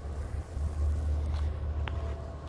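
Low, uneven rumble of wind buffeting a handheld phone's microphone, mixed with handling noise as the phone moves; a short click near the end.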